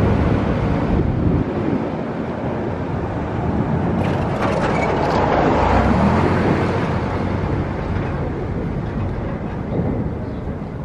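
Street traffic noise, a steady rumble that swells about halfway through as a vehicle passes close by, then eases off.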